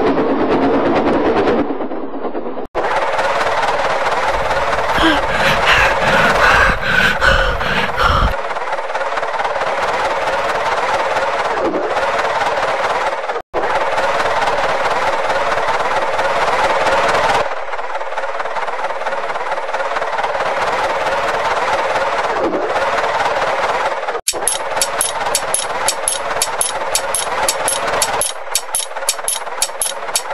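Dubbed steam-locomotive sound effect: fast, continuous puffing with hiss, cut off abruptly three times. It turns into a quick, even run of sharp chuffs near the end.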